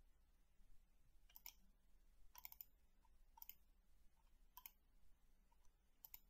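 Faint computer mouse button clicks, about four of them roughly a second apart, one a quick double click, over near-silent room tone.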